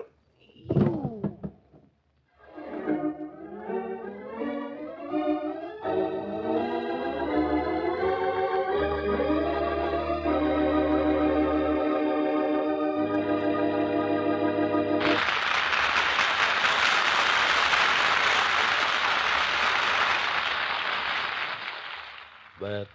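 Organ music bridge: a rising run of swelling chords climbing step by step to a held chord. About fifteen seconds in, the organ stops and a loud, even rushing noise takes over until near the end.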